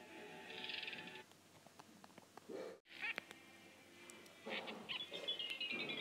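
Cartoon sound track: high, strained cat-like cries and squeals from an animated cat character, ending in a long high-pitched tone that falls slowly in pitch.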